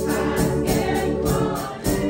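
A small group of young women singing a gospel hymn together over sustained organ chords, with a brief dip in the sound just before the end.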